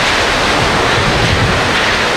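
Typhoon-force wind blowing hard across the microphone, a loud steady rush that cuts in suddenly.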